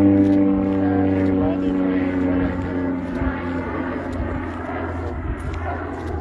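A steady engine drone: a low hum with strong, even overtones, holding one pitch and slowly fading.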